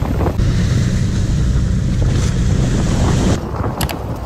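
Motorized outrigger boat running steadily at sea, its engine hum under wind buffeting the microphone and water rushing past the hull. A little past three seconds in the sound drops abruptly to quieter wind and water, with two quick clicks near the end.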